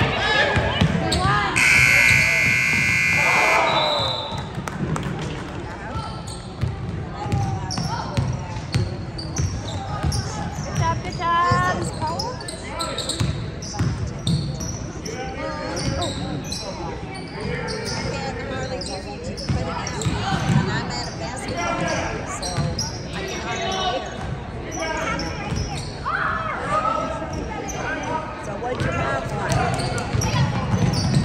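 Basketball game in a large gym: a ball bouncing on the hardwood court and spectators' voices echoing in the hall. A loud buzzer sounds for about two seconds near the start.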